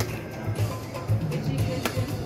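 Video slot machine's bonus-round music with a steady low beat, playing while its hold-and-spin respins run, and a sharp click near the end.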